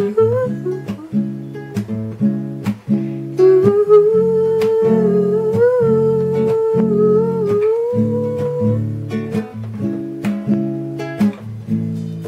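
Acoustic classical-style guitar strummed in a steady rhythmic chord pattern, changing chords every second or so. A man's voice hums the melody over it in long held notes, dropping out a few seconds before the end while the strumming goes on.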